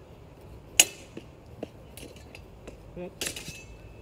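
Sparring longswords clashing: one sharp, ringing clash about a second in, the loudest, then a quick flurry of clashes near the end, with lighter knocks between.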